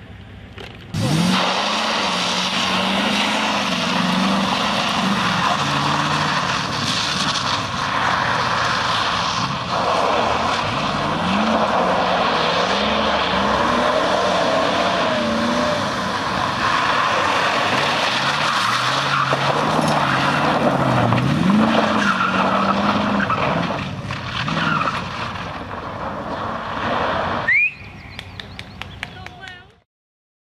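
Classic car engine revving up and dropping back several times as it is driven hard through tight turns, with tyres skidding and scrabbling on loose gravel. The sound starts abruptly about a second in and cuts off just before the end.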